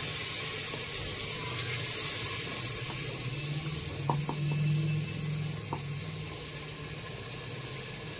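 Wooden spatula stirring wet chole masala in a pressure cooker pot, the masala sizzling with the added water, with a few sharp knocks of the spatula against the pot about four and six seconds in. A low steady hum runs underneath through the middle.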